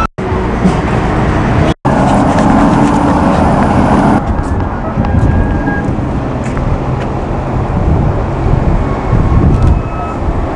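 Outdoor street traffic noise, a steady rumble of passing cars, broken by two brief dropouts in the first two seconds.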